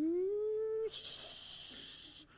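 A man's vocal sound effect of an elevator: a rising hum that glides up in pitch and cuts off about a second in, followed by a steady hissing "shhh" of the doors sliding open.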